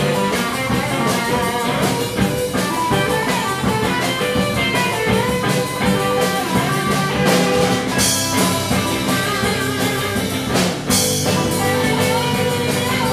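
Rock band playing live: electric guitars over a drum kit with a steady beat.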